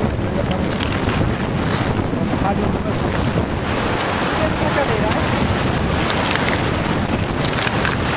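River current running over a shallow stony riffle, a steady rush of water, with wind buffeting the microphone.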